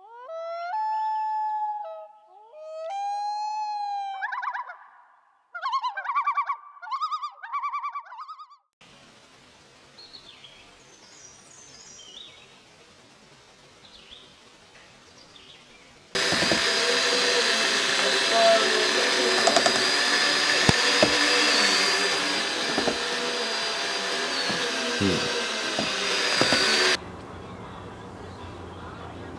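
A short channel intro sound logo of gliding, warbling pitched tones, followed by faint outdoor ambience with small bird chirps. Then about ten seconds of loud, steady noise with a few held tones and scattered clicks, which cuts off abruptly near the end.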